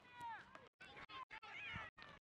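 Faint, high-pitched yelling voices: a long falling shout at the start, then shorter overlapping calls.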